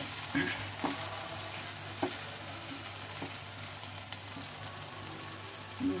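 A thick onion, cashew and poppy-seed paste sizzling quietly in a nonstick frying pan while a silicone spatula stirs it, with a few light scrapes and taps of the spatula against the pan.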